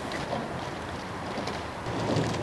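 Steady wind noise on the microphone over faint water sounds of sculling boats, with a few soft oar splashes.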